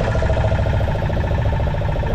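Fishing boat's engine running steadily, a constant rumble with a droning whine over it.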